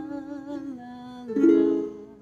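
Ukulele, tuned a half step down, playing under a woman's held sung 'la' that slides down in pitch, then a new chord strummed about one and a half seconds in and left ringing.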